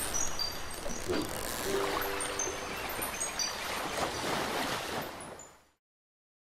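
Outro jingle: a steady surf-like wash with short, high chiming notes scattered through it and a brief low tune about two seconds in, fading out near the end.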